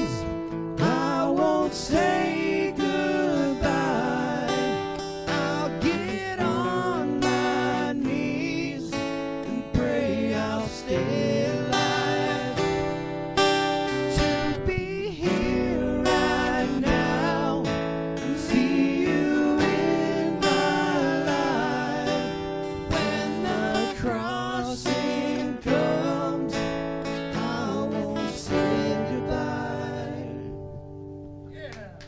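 Live acoustic rock song: strummed acoustic guitar under a sung vocal line with vibrato, the music dying away near the end as the song closes.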